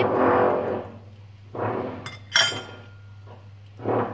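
Metal spoon scraping and then clinking once against a small stainless-steel bowl about halfway through, leaving a short, thin ring. A steady low hum runs underneath.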